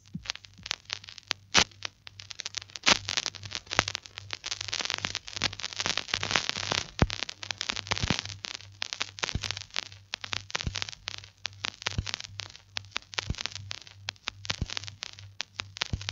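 Vinyl record surface noise with no music: the stylus runs in the run-out groove of a 45 rpm 12-inch, giving dense irregular crackle and scattered louder pops over a faint low hum.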